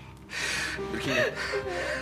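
People crying, with gasping, sobbing breaths and a wavering voice, over background music with long held notes.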